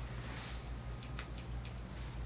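Grooming scissors snipping a dog's coat around the face: a quick run of about ten small, crisp snips, starting about half a second in.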